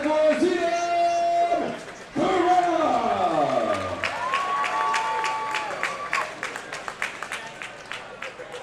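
A ring announcer drawls out a fighter's name in long, held tones over the hall's PA, and the audience claps and cheers in answer, the clapping running on from about two and a half seconds in.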